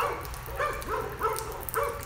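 A dog yipping: several short, high calls in quick succession.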